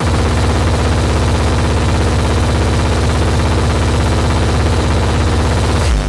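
Hardcore techno: a loud, very fast, unbroken roll of deep drum hits under a steady held tone, cutting in and out abruptly.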